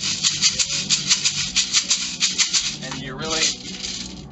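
A pair of maracas shaken with a thrown, aggressive stroke in a quick, even rhythm of sharp rattling hits, stopping about three seconds in.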